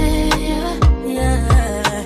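Background music: an R&B or hip-hop style track with a steady heavy bass beat under sustained synth tones.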